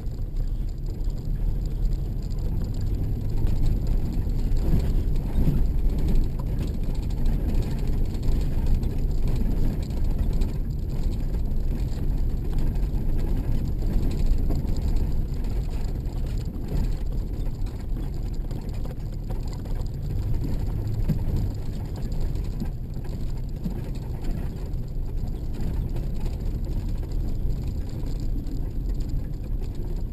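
Steady low rumble heard inside a vehicle driving on an unpaved gravel road: tyre and road noise with the engine running underneath.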